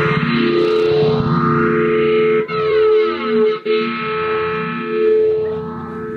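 Rhodes Mark I electric piano played through a multi-effects pedal: held notes ring on under the effects, with a sweeping effect passing through the sound about halfway through.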